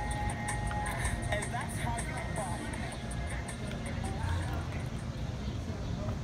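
Street-side patio ambience: background music and faint chatter over a steady rumble of road traffic.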